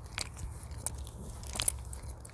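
Scattered small clicks and crackles over a low steady hum, with a sharper cluster of clicks near the end.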